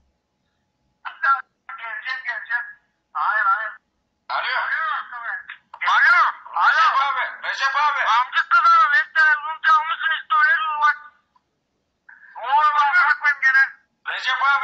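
A voice talking over a phone's loudspeaker, thin and tinny, with no deep tones. It comes in bursts, with a pause of about a second near the end.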